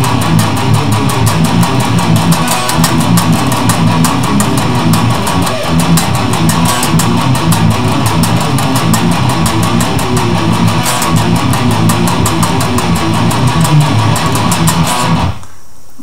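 Electric guitar playing a fast, low metal riff with rapid picking: the riff's faster section. It stops abruptly near the end.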